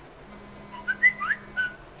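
A short run of whistle-like chirps: several quick notes gliding up and down in pitch, starting a little under a second in, over a faint steady low hum.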